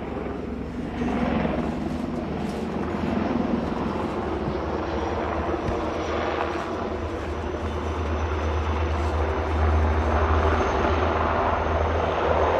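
Eurocopter Tiger attack helicopters, twin-turbine, flying low at a distance: a steady rotor and turbine drone with a deep low rumble. It grows gradually louder, strongest in the second half, as the helicopters come closer.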